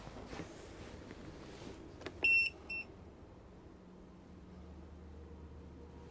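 The control panel of an all-in-one 12 V air-conditioning unit gives a click, then two electronic beeps, a longer one and a short one, about two seconds in as the unit is switched on. A second or so later a low steady hum sets in as the unit's blower starts up.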